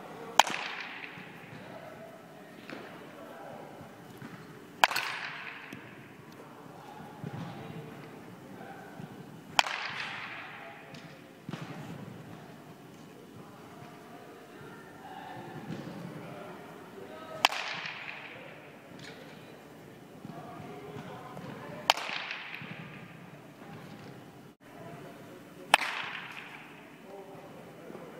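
Baseball bat striking pitched balls: six sharp cracks, several seconds apart, each with a trailing echo from the large indoor hall.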